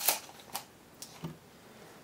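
Light clicks and clatter of small tools and metal hardware being handled on a cloth-covered worktable. One sharper click comes right at the start, then a few fainter ones follow within the next second.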